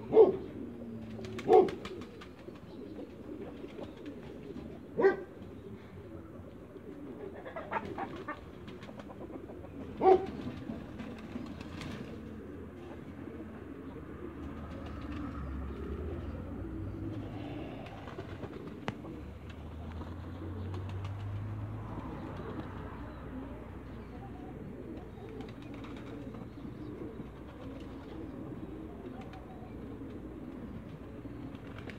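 Muscovy ducks making short, soft cooing calls, with a few louder ones in the first ten seconds and quieter, lower sounds after.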